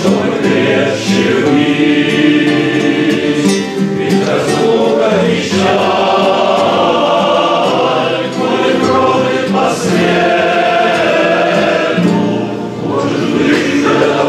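A large group of men and women singing a song together, accompanied by an acoustic guitar.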